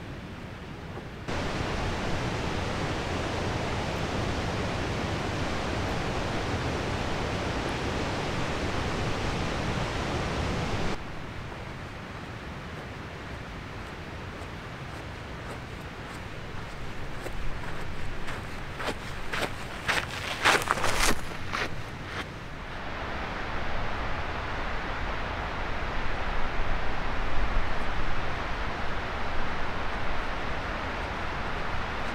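Steady rushing outdoor noise that starts abruptly about a second in and cuts off abruptly about a third of the way through. Past the middle comes a run of footsteps on a gravel trail, and the steady rush returns near the end.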